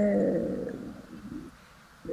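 A woman's voice drawing out a hesitant vowel sound that fades away over about a second and a half.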